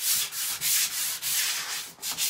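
Mesh sanding sponge rubbed by hand over a painted wooden cabinet panel in quick back-and-forth strokes, a dry scratchy hiss. This is a quick scuff sand that knocks down surface texture so it won't show through thin rice paper laid on top.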